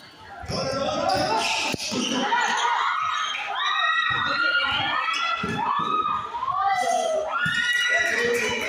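A basketball bouncing on a concrete court amid shouting and voices of players and onlookers.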